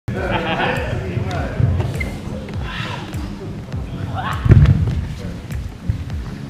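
Bodies and feet moving on a sports-hall floor during light hand-to-hand sparring, with low thumps, then one heavy thud about four and a half seconds in as a man is taken down onto the floor; the sound echoes in the large hall.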